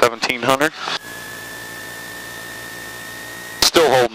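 Voices over the cockpit intercom, then about two and a half seconds of steady hiss with a thin whine that slowly rises in pitch. The hiss starts and stops abruptly as the voices drop out and come back near the end.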